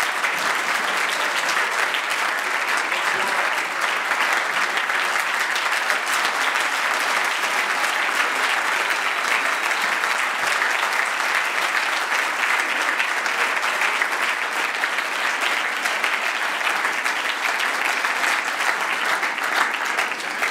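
Large audience applauding: dense, even clapping at a steady level.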